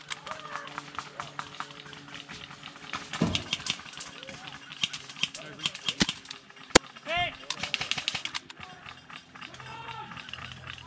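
Faint, indistinct voices with many scattered sharp clicks and snaps. One loud, sharp crack comes a little before seven seconds in.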